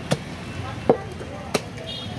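Heavy butcher's cleaver chopping lamb head and bone on a wooden chopping block, three sharp strikes roughly two-thirds of a second apart.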